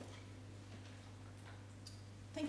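Quiet room tone with a steady low hum, and two faint ticks late on.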